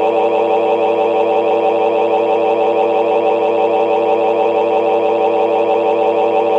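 A loud, steady electronic alarm-like tone with several pitches sounding at once and a fast flutter, holding unchanged throughout.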